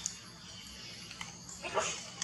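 A macaque gives one short, high whimpering call near the end, over faint rustling and a few small clicks.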